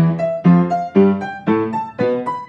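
Piano playing an octave exercise: a left-hand octave struck together with the right-hand thumb, then the right hand's upper octave note, about two chords a second with a single higher note between each. The pattern steps up the white keys one note at a time.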